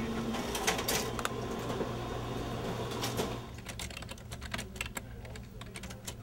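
An office printer runs with a dense clatter of mechanical clicks for about three seconds. After that the noise drops to quieter, irregular computer-keyboard typing.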